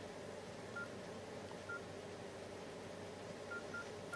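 Nokia E63 keypad tones: four short, identical high beeps as the navigation key is pressed, the last two in quick succession near the end.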